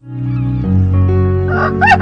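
Music starts up with steady held notes, and near the end a rooster begins crowing over it.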